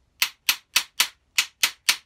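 Sharp, evenly spaced metal knocks, about four a second, as a steel bar is tapped home into a tight-fitting hole in the combination plane's aluminium fence.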